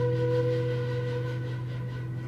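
Fado ending on a long held final chord: a flute sustains one steady note over guitar notes ringing low beneath it, everything dying away. The flute note fades out about a second and a half in, and the low notes keep ringing, quieter.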